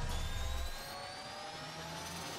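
Electronic intro sound effect: a rising whoosh with several tones climbing slowly in pitch over a hiss, and a low rumble that fades out about a third of the way in.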